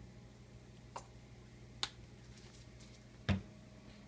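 Plastic condiment squeeze bottle handled over a kitchen counter: two faint clicks, then a single dull thud just after three seconds in, over a low steady hum.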